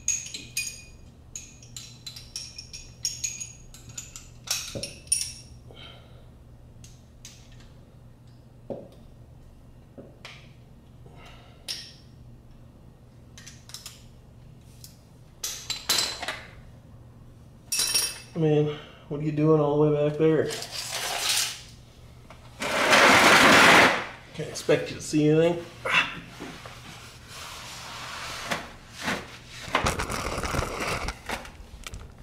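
Metal hand tools clinking and tapping together: a socket, extension and wrench being sorted out and handled, with sparse clicks through the middle. Later come a few short wordless vocal sounds, and about three-quarters of the way in a loud burst of rustling noise lasting about a second and a half.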